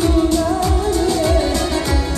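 Live Kurdish dance music through a PA: a male singer's wavering melody over electronic keyboard and a steady, heavy drum beat.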